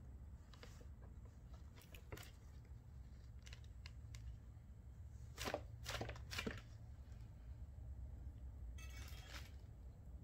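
Faint clicks and crunching as a white-throated monitor seizes and bites a pinky mouse held out on metal tongs, with three sharper clicks close together about halfway through and a short rustle near the end, over a low steady hum.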